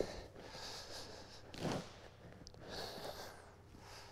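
Hands crumbling and rummaging through soaked sawdust-and-soybean-hull substrate (Master's Mix) in a plastic tub: soft rustling in uneven bursts, the loudest a little under two seconds in.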